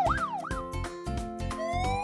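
Cartoon siren sound effects: a fast rising-and-falling yelp that stops about half a second in, then a second siren that begins a slow rising wail near the end. Children's background music with a steady beat plays underneath.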